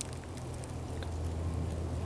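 Steady low hum and faint hiss of background noise, with a small click about halfway through.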